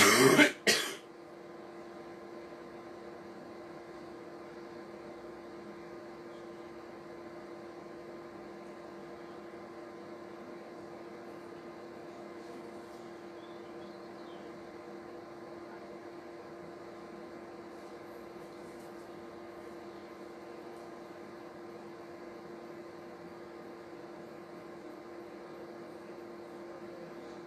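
A person coughs twice in quick succession, under a second in all, right at the start. After that only a steady low hum with one constant tone carries on unchanged.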